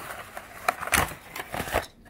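Crimped rim of an aluminium foil takeout tray crinkling and crackling as its paper-board lid is pried off, in a series of irregular sharp crackles.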